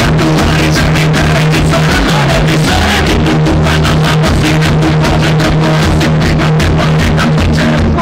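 Loud live rock band playing, heard from inside the crowd through a phone's microphone: drums beating fast and steadily over a continuous bass line.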